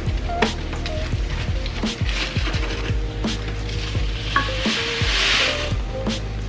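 Dry Rice-A-Roni rice and vermicelli mix poured from its cardboard box into a hot saucepan and stirred with a wooden spoon: a steady rustling sizzle that swells loudest near the end. Background music plays underneath.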